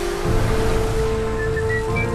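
Commercial background music with held notes over a steady rushing hiss of water spraying from a whale's blowhole spout. A short run of high notes steps upward in the second half.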